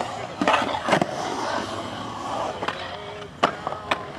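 Skateboard wheels rolling on a concrete bowl, with sharp clacks of the board: two in the first second and a few more near the end.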